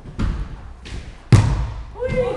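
A football being kicked and striking the walls in an echoing indoor futsal hall: a thud about a quarter second in, a fainter knock near the middle, then the loudest, sharp bang about a second and a third in, ringing on in the hall.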